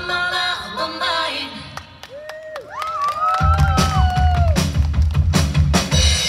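Live rock band on electric guitar, bass and drums. About a second in, the bass and drums drop out and it goes quieter, leaving a few held, bending notes; about halfway through, the full band with drums and bass comes crashing back in.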